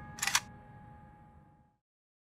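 The last held notes of a horror trailer's score fade out. About a quarter second in, a short, sharp hiss-like sound effect cuts through them. The music dies away before the end.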